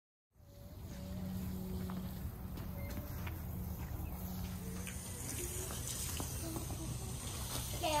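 Faint, distant voices over a steady low hum, starting suddenly just after the beginning.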